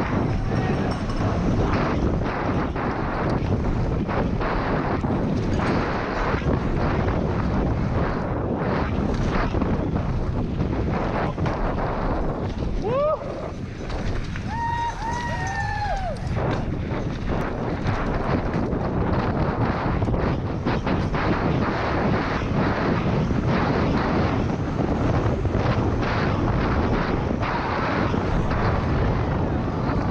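Wind rushing over a bike-mounted camera's microphone, with the rumble and rattle of a downhill mountain bike running fast over a dirt trail. About halfway through, a few brief high-pitched sounds rise and fall over the noise.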